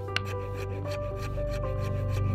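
Hand woodworking: a sharp tap of a wooden mallet on a chisel right at the start, then fast, even rasping strokes of a fine-bladed fret saw cutting a thin board, over background music with long held notes.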